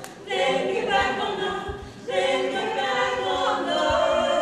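A women's barbershop quartet singing a cappella in close harmony, holding long chords with short breaks just after the start and again about two seconds in.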